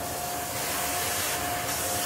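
Airbrush spraying paint onto a hardbait lure: a steady hiss that grows brighter about half a second in, over a steady machine hum with one constant tone.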